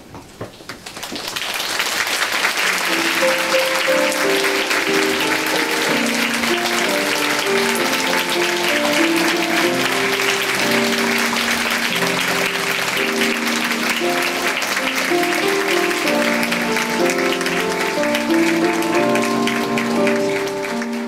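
Audience applause that swells in about a second in and holds steady, over a grand piano playing a gentle melody of separate notes.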